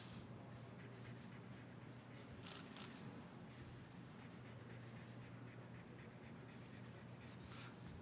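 A pen scratching on paper as a document is signed, faint, in short irregular strokes, over a low steady room hum.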